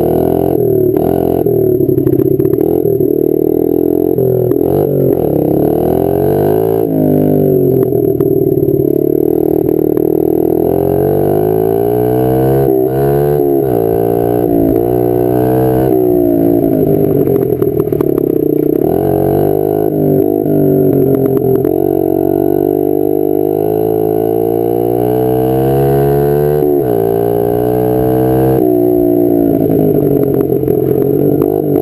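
Honda CRF50F's small air-cooled four-stroke single-cylinder engine running hard under load. Its pitch climbs steadily as the bike accelerates and drops sharply at each gear change, several times.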